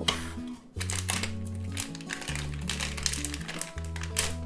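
Crinkling and rustling of a blind box's foil bag and cardboard packaging as it is opened by hand, in irregular bursts, over background music with a slow bass line.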